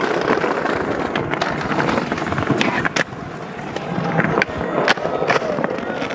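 Skateboard wheels rolling over paving tiles with a continuous rumble, broken by several sharp clacks of the board striking the ground, the clearest about halfway through and another near the end.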